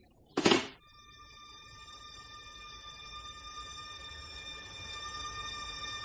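A short thump about half a second in, then a scene-change musical interlude: one high held tone fades in and slowly grows louder.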